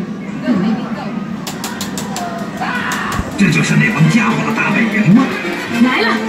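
Arcade shooting game's audio: game music and effects with a quick run of sharp clicks between about one and a half and three seconds in, and voices over it.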